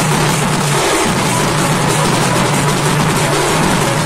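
Sambalpuri folk band playing a bhajan tune live: barrel drums beaten with hand and stick among other stick-played drums, loud and continuous with no break.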